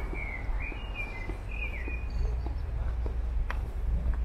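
A small bird chirping a string of short, sliding notes through the first two seconds, over a steady low rumble and faint, evenly spaced footsteps.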